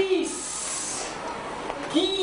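A voice saying short syllables, each trailing off into a drawn-out hissing "sss".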